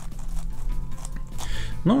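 A DaYan NeZha 5M strong-magnetic 5x5 speed cube being turned by hand: quiet, slightly rough plastic layer turns with small clicks as the layers snap into line.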